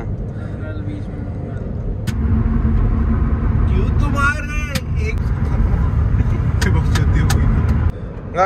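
Road and engine noise inside a moving Suzuki car, a steady low rumble that grows louder about two seconds in. A brief voice sounds just after four seconds, and a few light clicks come near the end.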